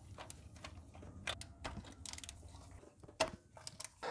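Ratchet and socket undoing intake manifold nuts: faint scattered clicks and metallic clinks, with a short quick run of ratchet clicks a little after two seconds and a louder click a little after three.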